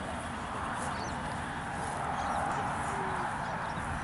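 Steady outdoor background noise with a few faint, scattered bird chirps.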